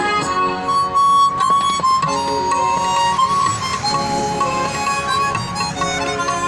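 Harmonica playing a song melody in long held notes, over recorded instrumental accompaniment.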